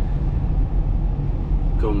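Steady low engine and road rumble heard inside a moving car's cabin.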